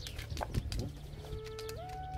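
A large Malamute-type dog howling: one long steady note that starts just over a second in, then steps up in pitch and is held.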